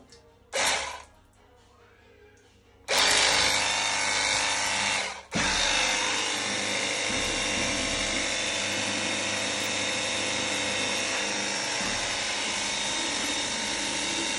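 A 20-volt cordless battery pressure washer runs, its motor and pump spraying a water jet into a plastic bucket. It gives a short burst near the start, falls quiet for about two seconds, then runs steadily from about three seconds in, with one brief cut near the five-second mark.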